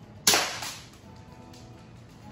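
A single airsoft pistol shot, a sharp crack about a quarter second in that rings briefly off the hall's walls.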